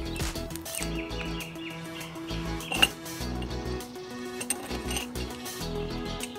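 Background music with steady held notes over a low, regular beat, and one sharp click a little before halfway.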